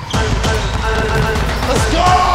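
Basketball being dribbled on a hardwood gym floor, over background music with a heavy bass.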